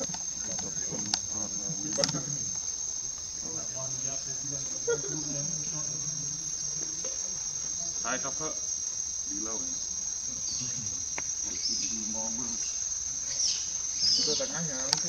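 Insects singing in a steady, high-pitched drone, with faint low voices and a few clicks.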